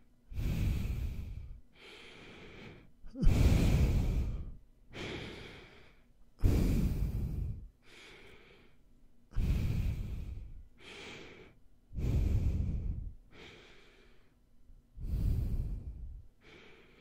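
Close-miked nasal breathing for ASMR: loud, rumbly breaths through the nose into the microphone about every three seconds, six in all, each followed by a quieter breath.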